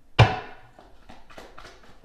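A single sharp thump a fraction of a second in, the loudest thing here, dying away quickly, followed by a few light clicks.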